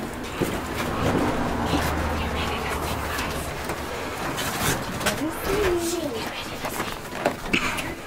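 Hushed, indistinct whispering and murmuring from a small group, with rustling and small clicks as they shuffle and handle things.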